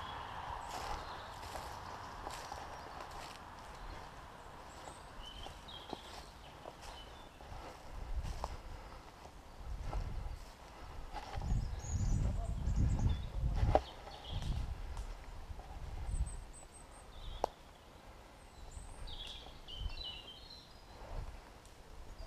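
Footsteps crunching and scuffing through dry leaf litter and brush, with low thuds that come thickest and loudest about halfway through.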